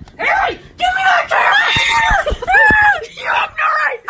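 Children screaming and yelling in several high-pitched, wavering shouts, with a couple of low thumps around the middle.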